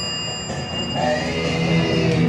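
Elevator hall lantern arrival chime ringing out and fading, followed from about a second in by a steady low hum.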